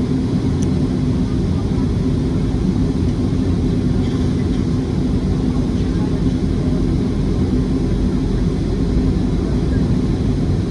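Jet airliner cabin noise while taxiing: a steady low rumble of the engines at low power and the airframe rolling along the taxiway, heard from inside the cabin.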